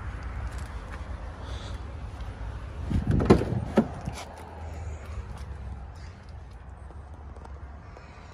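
Car door being handled and opened: a few sharp latch clicks and knocks about three seconds in, over a steady low hum.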